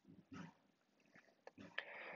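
Near silence: room tone in a pause of a voice-over, with a few faint, short sounds.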